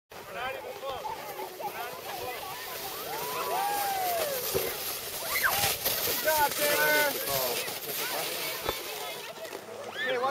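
Children's voices calling out and squealing, high-pitched and without clear words, with one long rising-and-falling call about three seconds in.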